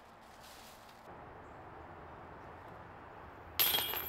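A disc golf disc strikes the hanging chains of a metal disc golf basket about three and a half seconds in, a sudden metallic jingle of chains that rings on, the sound of a putt caught in the basket.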